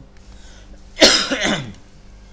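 A man's single loud, cough-like burst of breath and voice about a second in, falling in pitch and lasting under a second.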